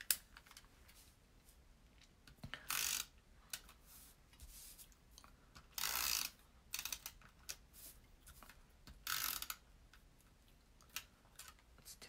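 Stampin' Up! SNAIL adhesive tape runner rolled across the back of paper pieces in three short strokes about three seconds apart, with softer clicks and paper handling between.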